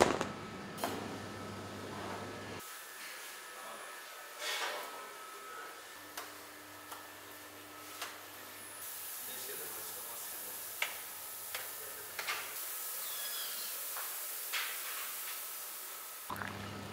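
Metal baklava tray scraping as it is slid out of the oven at the start, then a series of sharp clicks and taps of a knife and metal tray as the baked baklava is cut. A steady hiss sets in for the second half.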